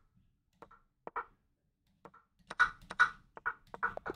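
A series of short, sharp clicks of moves being made in an online blitz chess game: a few spaced clicks, then a quicker run of about eight in the last second and a half, a time scramble with the clock running out.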